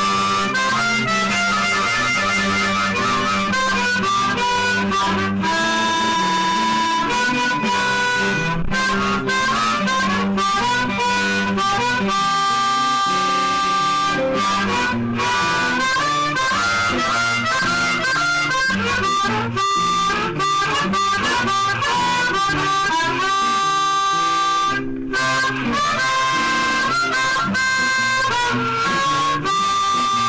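Hohner Marine Band diatonic harmonica in C, played in second position to improvise a G blues over a guitar backing track, mixing long held notes with quick runs. It is played into a home-made microphone built from an old telephone handset.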